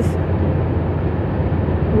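Steady road and engine noise inside a car cabin at highway speed: a low rumble with a hiss above it.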